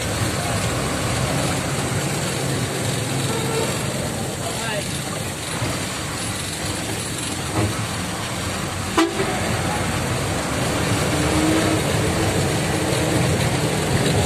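Steady engine and road noise heard from inside a moving bus, with vehicle horns honking now and then and a single sharp knock about nine seconds in.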